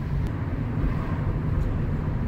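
Car engine and tyre noise heard from inside the cabin while driving slowly along a street, a steady low hum.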